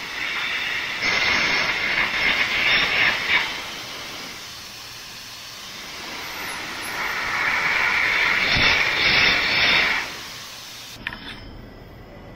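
Air carbon arc gouging: the carbon arc and compressed-air jet hiss and crackle loudly as an old, bad weld is blown out of a steel beam joint. It comes in two runs of a few seconds with a quieter stretch in between, and dies away shortly before the end.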